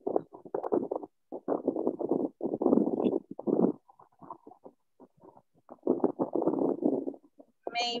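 Muffled, band-limited speech over a video call: a participant's voice comes through dull and garbled, in short choppy bursts with a brief quieter gap midway.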